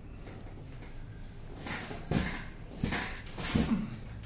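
A woman lets out a few short, breathy groans and whimpers in the second half, the last one a rising pained whimper. They come as her hip is pressed in a side-lying chiropractic adjustment.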